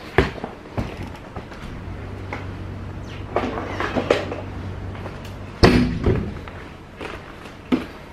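Scattered knocks and thumps as a bicycle floor pump is fetched and handled, with one loud thud about five and a half seconds in.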